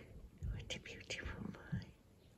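Soft whispering to a cat, with a few short clicks and rustles from a hand stroking its fur.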